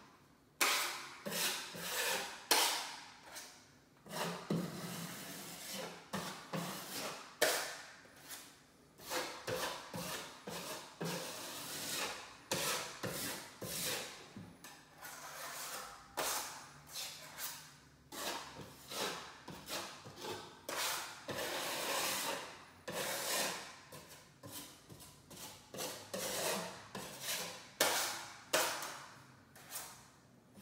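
Irregular scraping and rubbing strokes of a hand tool against drywall, roughly one or two a second with brief pauses.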